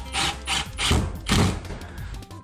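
Milwaukee Fuel cordless impact driver driving a long screw into a wooden wall, run in several short bursts.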